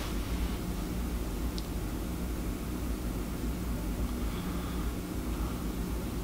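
Steady low hum with an even hiss over it: constant background room noise, with no distinct event.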